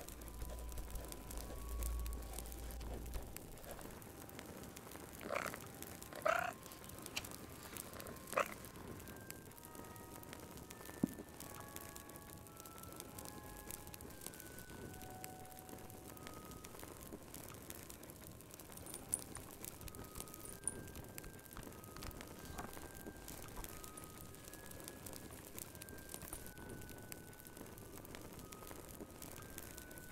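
A frog croaking a few times, between about five and nine seconds in, over a faint crackling fire. Soft, scattered single musical notes sound throughout.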